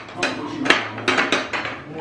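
Serrated kitchen knife sawing through the chocolate coating of a cake, with a string of sharp clicks and scrapes as the blade knocks against the plate.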